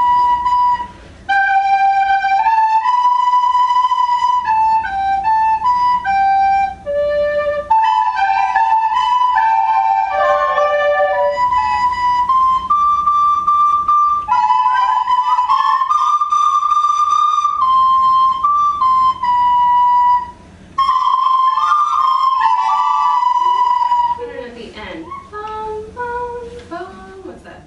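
Soprano recorders playing short stepwise melodic patterns in echo. One recorder plays a four-beat pattern of a few notes around G, then a group of recorders plays it back, slightly out of tune with each other. Near the end the recorders stop and voices sing sliding pitches.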